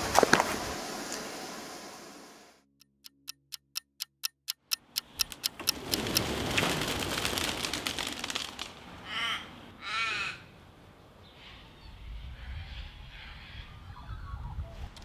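A crow cawing, two short bursts of calls close together a little past the middle, over steady outdoor background noise. Earlier there is a brief quiet gap holding a run of about ten evenly spaced ticks.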